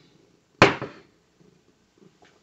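A drinking glass set down on a hard countertop: one sharp clunk about half a second in, dying away quickly.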